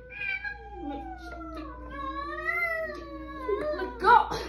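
Domestic cat giving one long, drawn-out yowl that slowly wavers up and down in pitch: a hostile, territorial warning at a newly arrived cat.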